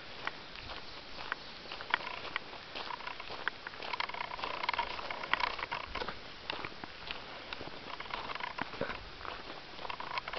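Irregular crunching and clicking of gravel and small stones under movement along a stony trail, with rustling handling noise on the camera.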